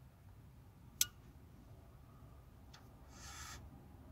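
A cigarette lighter clicks sharply once about a second in while a cigarette is being lit. Near the end comes a short, soft breathy hiss as cigarette smoke is exhaled.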